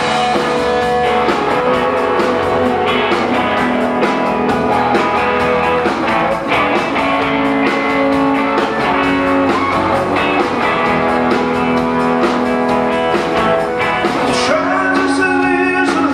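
Live rock band playing loudly: electric guitars, electric bass and drums, with long held melody notes over the full band.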